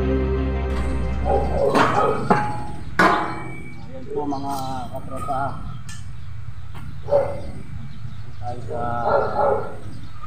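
Electric guitar background music that stops about a second and a half in, followed by people's voices talking off and on, with two sharp knocks about two and three seconds in.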